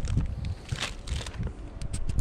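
Thin plastic sheet rustling and crinkling as it is handled and dropped, with a couple of sharper crackles, over wind buffeting the microphone.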